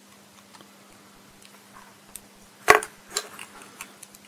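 Hard plastic model-kit parts clicking as hands handle and refit an SD Gundam figure: one sharp click about two-thirds of the way in, followed by a couple of lighter clicks.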